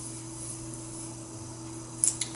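Quiet room tone: a low steady hum with faint hiss, and nothing else happening.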